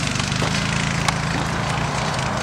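Small motorbike engine running steadily, with a sharp tick about halfway through.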